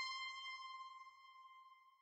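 A single held synthesizer note, a clear tone with a few overtones, fading slowly away as an electronic track ends. It has died almost to nothing by the end.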